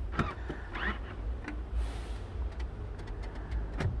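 Electric motor of a Mercedes GL 350's power-folding third-row seat running as the seat back folds down flat, a steady low hum.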